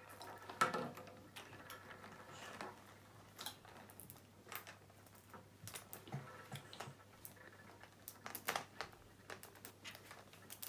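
Faint, scattered clicks and light rustling of small plastic mini-egg toy capsules and their wrapping being handled and worked open by hand.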